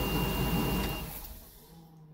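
Workhorse motorhome's 8.1 Vortec V8 running with a thin steady whine, switched off with the ignition about a second in, its sound dying away over the following second.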